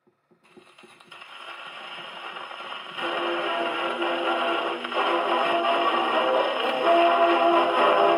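Wind-up gramophone playing a worn 78 rpm shellac record of a 1930s dance-orchestra foxtrot: a few faint clicks as the needle sets down, then surface hiss under the orchestral introduction, which swells gradually and gets louder about three seconds in.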